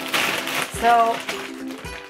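Background music with held notes, over a brief crackle of a clear plastic vacuum storage bag being shifted and handled in the first half-second.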